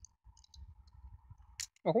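Light plastic clicks and handling noise from small N-gauge model train car parts being worked by hand, with a sharper click about one and a half seconds in.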